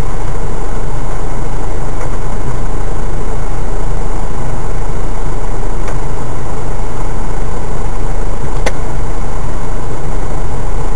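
4x4 engine running steadily at low revs while crawling down a muddy, rutted track, a steady low drone. A couple of faint clicks come about six and nine seconds in.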